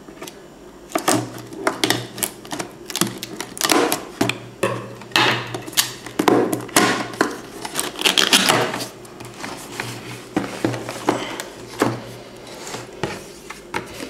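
Scissors cutting through the seal sticker on a cardboard box, then the box being handled and its lid opened: an irregular run of snips, clicks and cardboard scrapes.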